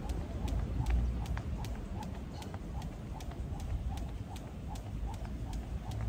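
Skipping rope slapping brick paving with light foot landings, a quick steady rhythm of sharp ticks, over a low rumble of wind on the microphone.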